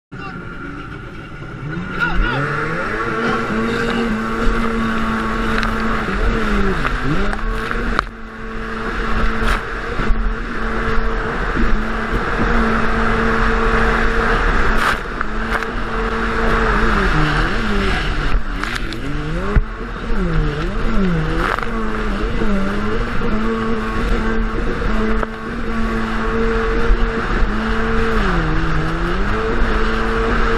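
Sea-Doo HX personal watercraft's two-stroke engine revving up sharply from the start about two seconds in, then running at racing throttle. Its steady high note dips briefly several times along the way. Hiss of water spray and wind rumble on the camera microphone lie under it.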